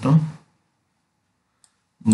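A man's voice trails off at the start, then near silence broken by one faint, sharp computer-mouse click a little past one and a half seconds.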